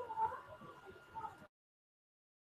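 Faint, brief high-pitched vocal sounds over an online call line, then the audio cuts off to dead silence about one and a half seconds in.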